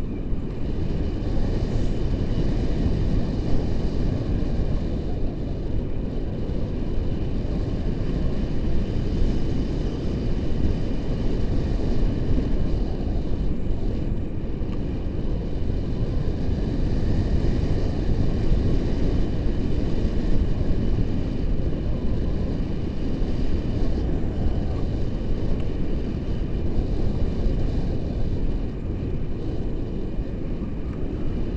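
Wind rushing over the camera's microphone during a tandem paraglider flight: a steady low buffeting rumble with no break.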